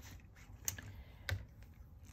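Light clicks and taps of fountain pens being handled and set down on a desk, two of them sharper and a little over half a second apart.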